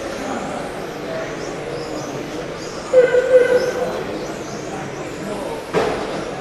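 1/10 electric RC touring cars with 13.5-turn brushless motors running laps on a carpet track: a steady mix of high motor whine and tyre noise. A short burst of voice comes about three seconds in, and a sharp knock sounds near the end.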